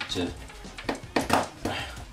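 A man's voice speaking briefly in a small room.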